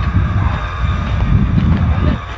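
Wind buffeting the phone's microphone: an irregular, loud low rumble.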